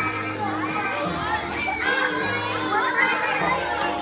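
Many children's voices chattering and calling out at once over background music.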